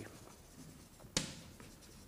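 Chalk writing on a blackboard, a faint scratching with one sharp tap of the chalk a little over a second in.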